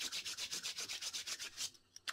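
A man's palms rubbed briskly back and forth against each other, about nine quick rubbing strokes a second, stopping shortly before the end.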